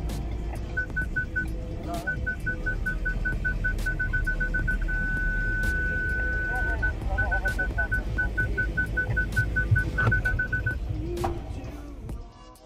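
Ford Everest parking-sensor warning beeping in quick, even pulses. The beeps merge into one unbroken tone for about two seconds in the middle, the sign of an obstacle very close to the bumper, then pulse again and stop near the end.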